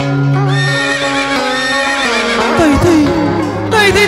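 Instrumental backing music for a Vietnamese cải lương duet, holding sustained notes, with a horse whinny sound effect about halfway through that wavers and slides downward in pitch.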